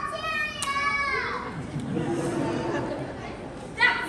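Children's voices in a hall: a child's long, high-pitched shout that falls in pitch and ends about a second in, followed by lower talking from the child actors.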